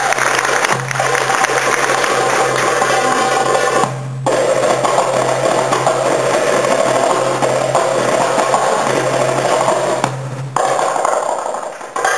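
Darbouka (goblet drum) played solo by hand in a rapid, dense stream of strokes, with two brief pauses: one about four seconds in and one near the ten-second mark.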